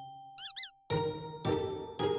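Light, chiming background music, with a pitched note struck about every half second and a held tone under it. About half a second in comes a short burst of quick, high, gliding squeaks.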